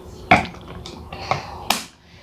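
Plastic water bottle set down with a knock on a tabletop, followed by a few lighter taps and handling noises, then a sharp click near the end as its flip-top lid snaps shut.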